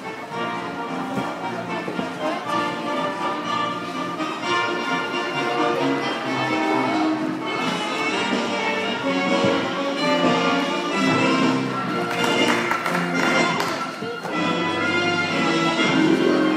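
Music for a gymnastics floor routine, playing steadily over the hall's sound system.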